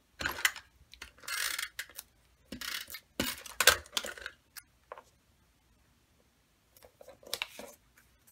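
Paper cardstock pieces being handled, slid and set down on a craft mat: several short rustles and light taps over the first four seconds or so, then a quiet gap, then a few softer rustles near the end.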